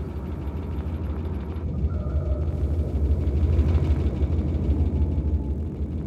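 Sound-design underscore of a molecular animation: a steady low rumbling drone, with a faint brief tone about two seconds in.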